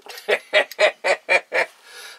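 A man laughing in a run of short bursts, about four a second, fading near the end.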